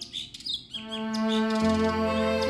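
Birds chirping in short, quick calls during a brief break in slow instrumental background music; the music's held tones come back in about three-quarters of a second in, and faint chirps continue over it.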